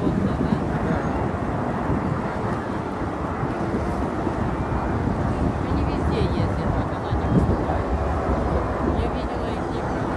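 Steady distant rumble of the Snowbirds' CT-114 Tutor jets flying in formation, mixed with the voices of a crowd.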